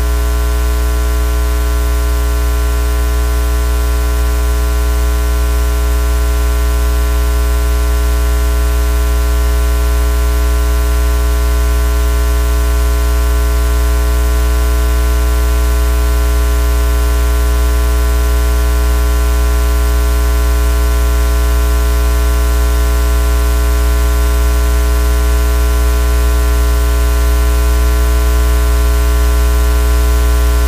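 Loud, steady electrical hum with hiss: a low mains buzz with many unchanging overtones that never varies, interference on the stream's audio line.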